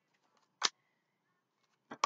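A sharp, short snap of tarot cards being shuffled by hand, about a third of the way in, with another brief click near the end; quiet between.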